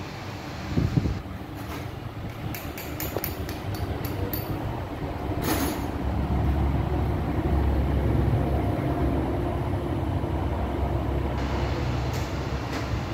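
Toyota 3RZ four-cylinder petrol engine running at a steady idle, its low rumble growing louder about halfway through. A few sharp clicks and rustles come in the first five seconds.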